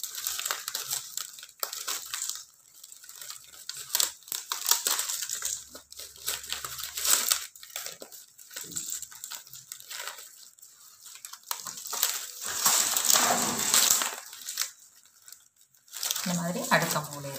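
Plastic strapping-tape strips (pattai wire) rubbing against each other as hands weave them through the tray, in irregular scrapes with sharp clicks. The loudest stretch comes near the end.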